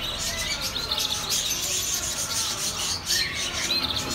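Small birds chirping continuously: a dense run of short, high-pitched chirps and little rising tweets.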